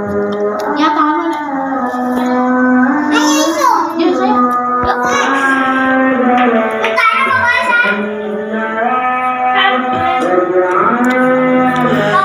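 Islamic devotional chanting (pujian) before prayer, sung from a mosque: one voice holding long drawn-out notes with sliding ornaments, briefly pausing about seven seconds in.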